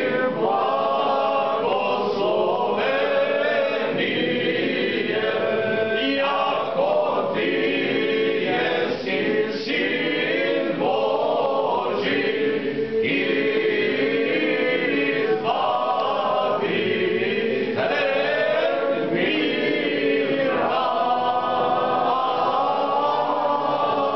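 A group of voices singing a cappella, a church chant sung in phrases of a few seconds with notes held at the ends.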